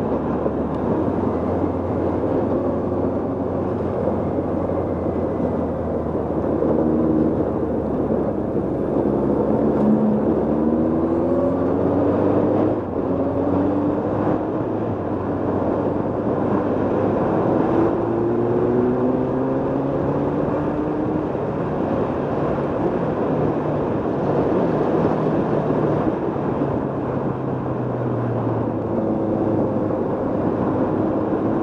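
Motorcycle engine pulling up a climb, its note rising several times over in the middle as the rider accelerates through the gears, under steady wind and road noise.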